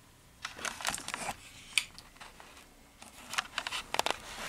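Handling noise: a scatter of small clicks and knocks as the camera is picked up and moved toward the tube end, with a sharper click a little under two seconds in. Under it runs a faint steady low hum from the fluorescent fixture's ballast.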